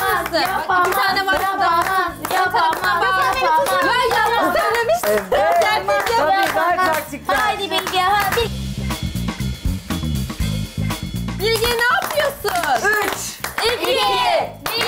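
A group of women chanting and singing in unison with rhythmic hand clapping over background music, cheering on a timed game. About two thirds of the way through the voices thin out and the low end of the music comes forward before the chanting resumes.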